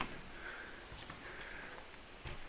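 Faint breathing through the nose close to the microphone, two soft breaths, against quiet room tone.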